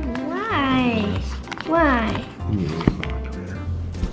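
Two drawn-out, high-pitched vocal calls: the first rises and falls in pitch over about a second, and a shorter one falls about two seconds in.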